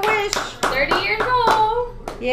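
A small group clapping by hand, with voices calling out in cheer.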